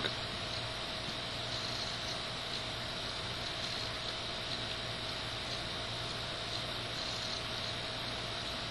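Steady hiss of background noise with a low hum and a faint steady tone underneath, unchanging throughout.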